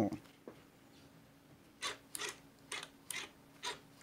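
Handling of a toy RC car and its pistol-grip controller: five short, scratchy clicks in the second half, over a faint steady hum.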